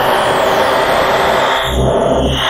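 Synthesized producer transition effect: a dense, noisy sweep with a high whistle gliding down in pitch in the first second and a slowly rising tone underneath, with low bass booms near the end.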